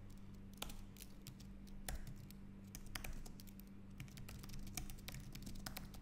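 Computer keyboard typing: irregular, faint key clicks over a low steady hum.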